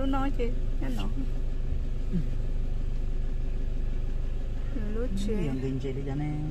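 Car engine running with a steady low hum, heard from inside the cabin.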